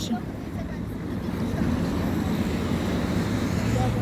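City traffic noise: a steady low rumble of passing road vehicles with a low hum, slowly growing a little louder.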